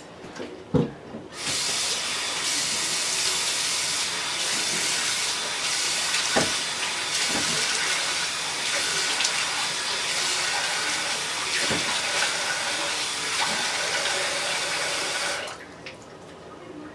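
Bathroom sink tap running while the face is rinsed with water; the flow comes on about a second in and shuts off near the end.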